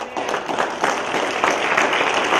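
Audience applauding, breaking out suddenly and holding steady.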